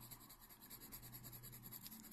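Faint scratching of an orange coloured pencil on drawing paper, in quick short shading strokes.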